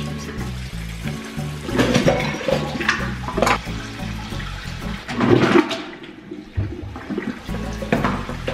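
Music with a steady, repeating bass line, with several bursts of water running and splashing in a kitchen sink, the loudest about two, three and five seconds in.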